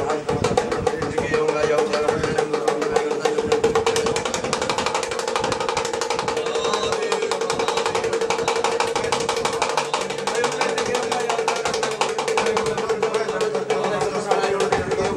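Devotional music with voices: a fast, even percussion rhythm over a steady held tone.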